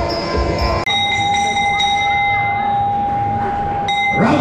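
Muay Thai ring music with a wavering wind-instrument melody. About a second in it breaks off, and a long, steady ringing tone holds for about three seconds with the music faint beneath: the ring bell signalling the start of the fight.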